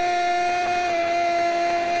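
A horn sounding one steady, held note for nearly three seconds over stadium crowd noise, starting abruptly and cutting off with a slight dip in pitch.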